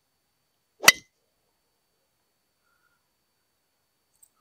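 A driver striking a Nitro Elite Pulsar Tour golf ball off the tee: a single sharp click with a brief ring, about a second in. The player finds this urethane-covered ball firm off the face, like a cheaper ionomer-covered ball.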